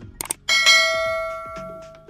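Subscribe-button sound effect: a few quick clicks, then a notification-bell ding about half a second in that rings out and fades over about a second and a half.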